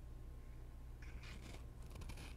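Faint rustle and scrape of a cloth wiping a metal communion chalice, in two short bursts about a second in and near the end, over a low steady hum.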